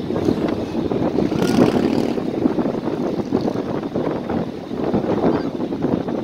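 Wind buffeting the microphone: a steady, uneven rumbling rush with no clear engine tone.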